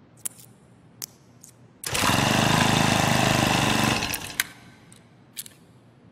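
Light metallic clicks, then a small motorcycle engine running steadily for about two seconds before dying away, followed by two more clicks.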